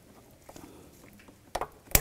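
Faint handling noise, then two sharp plastic clicks, one about a second and a half in and a louder one at the very end. They come from a push-tab hose connector on a secondary air pump being worked loose.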